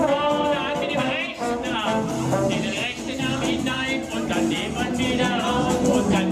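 Live Dixieland jazz band playing an upbeat tune, brass horns over drums.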